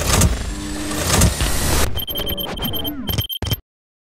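Intro sound design of vehicle engine sounds mixed with hard hits, turning into choppy high electronic glitch beeps about two seconds in, then cutting off suddenly a little after three and a half seconds.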